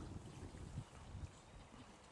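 Faint sound of shallow river water moving around a wading angler's legs and hands as he holds a salmon in the current, with an uneven low rumble.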